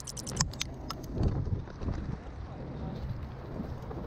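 Pigeons' wings flapping in a quick flutter of about ten beats a second in the first half second, with a few single wing claps after, over a steady wind rumble on the microphone.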